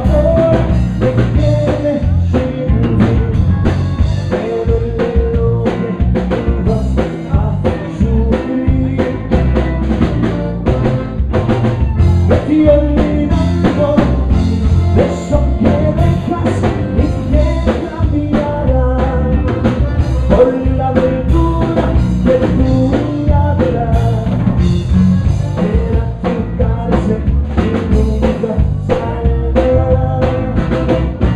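A live Tejano band playing a song, with button accordion, electric bass, drum kit and congas, recorded loud from close to the stage.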